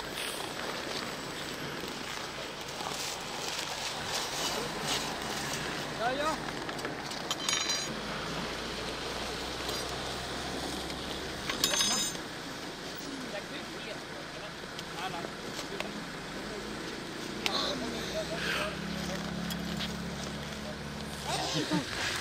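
Faint chatter of several people outdoors, with a brief shout about six seconds in and two short sharp clicks later on.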